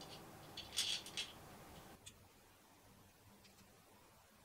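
A few light clicks and rattles, loudest about a second in, as the plastic part cooling fan is handled and fitted back onto a Prusa MK3S extruder. Near silence for the second half.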